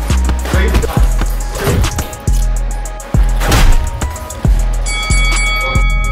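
Background music with a steady beat and deep held bass notes; about five seconds in, sustained high tones join it.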